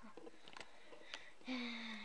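A child's voice drawing out a long "you" in the last half second, after a few faint clicks.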